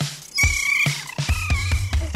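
Kea (New Zealand mountain parrot) calling: two high, drawn-out, harsh calls about half a second each, over background music with a steady beat.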